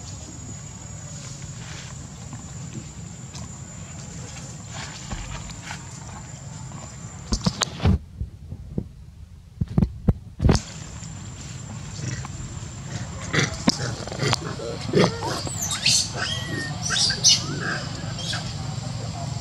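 Baby long-tailed macaque giving a run of short, high-pitched squeals and cries in the second half, while being held by an adult male. A few sharp knocks come midway, and a person laughs near the end.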